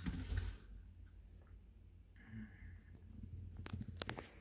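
Faint handling noise as a potted plant is set down on a wire rack shelf, then a low steady hum with a couple of light clicks near the end.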